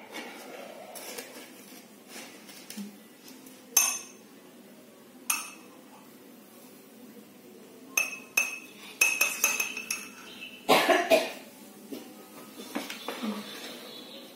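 Metal spoon clinking and scraping against a plastic mixing bowl and a drinking glass while stirring: a few single clinks, then a quick run of ringing clinks about eight to ten seconds in, and a louder clatter about eleven seconds in.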